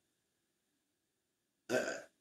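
Near silence with faint room hum, then a man's short hesitant "uh" near the end.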